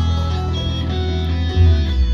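Live band playing loud amplified music: electric guitars over bass and drums, with a heavy low end and a louder low hit about a second and a half in.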